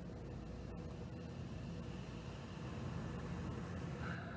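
Carbonated soda being poured from a bottle into a glass and fizzing: a soft, steady hiss that grows slightly louder in the second half.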